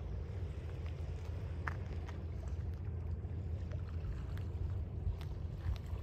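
Wind noise on the microphone at a river shore, a steady low rumble, with small waves lapping and faint scattered ticks of water.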